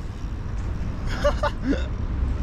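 Steady low outdoor rumble of street background, with a short call from a person about a second in.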